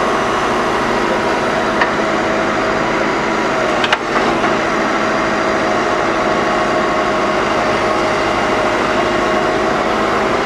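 Hydrema MX14 mobile excavator running steadily with a hydraulic whine as the tiltrotator grapple works. There is a small click, then a sharp knock just before four seconds in.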